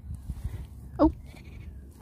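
Low rumble of wind on the microphone, with one short vocal sound falling in pitch about a second in.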